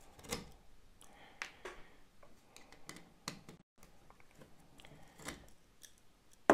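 Faint, scattered clicks and scrapes of a screwdriver and fingers on a DVB-T decoder's circuit board and metal case as it is taken apart.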